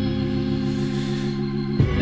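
Organ holding one steady chord as instrumental backing in a gap between sung lines, with a change of chord just before the end.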